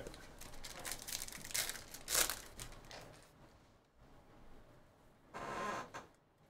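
Foil wrapper of a trading-card pack crinkling and tearing as the pack is opened, loudest about two seconds in, followed by a short rustle near the end.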